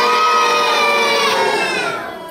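A child's voice holding one long, loud note that drifts slightly in pitch and fades out near the end.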